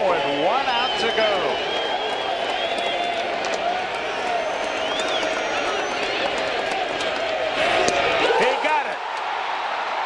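Ballpark crowd noise: a steady roar of cheering and shouting voices, swelling about eight seconds in as the final pitch is thrown.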